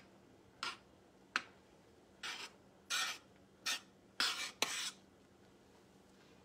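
A metal spoon scraping across the bottom of a stainless-steel saucepan of simmering raspberry sauce, in about seven short strokes that come longer and closer together near the end. The spoon is feeling the pan bottom for undissolved sugar.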